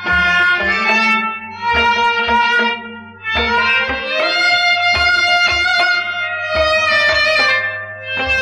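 Kashmiri Sufi folk ensemble of harmonium, sarangi and rabab playing a sustained melody over a drum beating in pairs of strokes about every second and a half, with a steady low hum under the recording.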